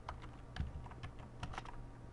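Computer keyboard being typed on: irregular key clicks in short runs, a few strokes a second.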